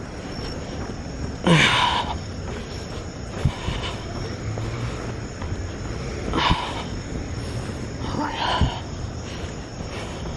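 A man sighing and breathing out heavily three times while walking, with soft footsteps and a faint steady high chirring of crickets underneath.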